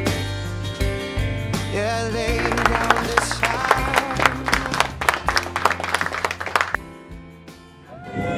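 Background music with a crowd applauding over it from about two seconds in. The clapping and music fade away near the end.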